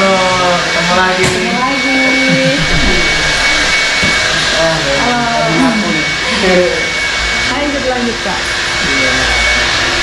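Hair dryer blowing steadily with a thin high whine, and a person's voice going on over it throughout.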